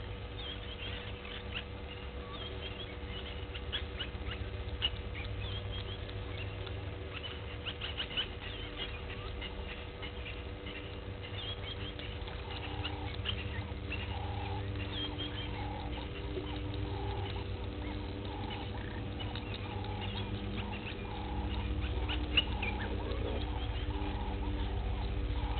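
Outdoor bush ambience: a bird calls over and over, about once a second, from about halfway through, over scattered short high chirps, a faint steady hum and a low rumble.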